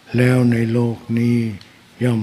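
A man's voice chanting Pali in a steady, near-level pitch into a microphone: two held phrases, then a short pause near the end.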